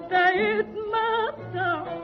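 Female voice singing an Arabic taqtuqah in the Huzam mode, three short ornamented phrases with wide vibrato. The sound is narrow-band, as on a 1931 studio recording.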